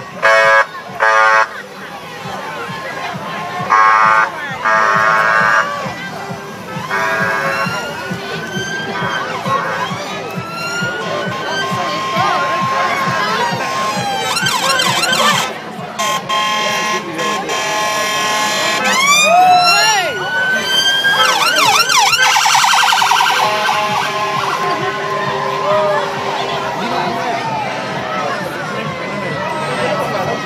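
Sirens of a police escort wailing and whooping in rising and falling glides over a crowd cheering and shouting, with three short loud blasts near the start.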